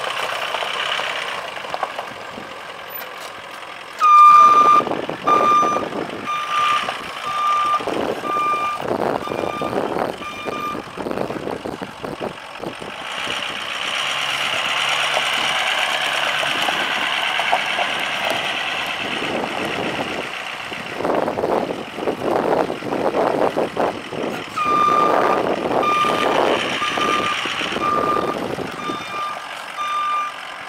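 Truck backup alarm beeping about once a second as the pickup reverses, over a diesel engine running. The beeps come in two runs: from about four seconds in to about eleven, and again near the end.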